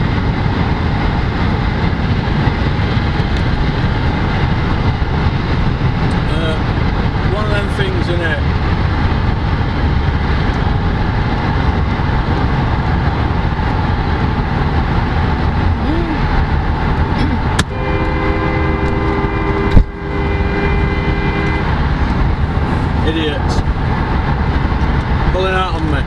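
Steady engine and road rumble inside a moving car's cabin. Near the end a steady chord-like tone sounds for about four seconds, broken by one sharp knock.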